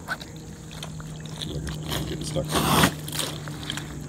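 Wet pond mud squelching underfoot as a foot in a DIY mud patten shifts in soupy mud, with one louder sucking squelch a little under three seconds in.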